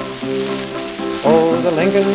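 A gramophone record of a folk song playing on a record player, the accompaniment going on between sung verses over the hiss and crackle of the disc's surface noise. The music grows louder again about a second in.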